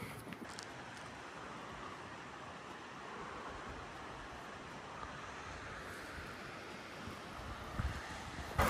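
Faint, steady rushing outdoor noise with no distinct events.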